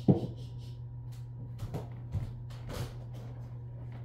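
A loud knock right at the start, then scattered light clicks and knocks of objects being handled and set down on a table, over a steady low hum.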